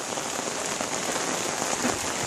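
Steady rain falling on wet tiled paving, an even, continuous hiss.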